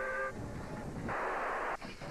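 Steam locomotive whistle sounding a steady several-toned note that stops just after the start, then a hiss of steam about a second in, lasting half a second, over a low rumble.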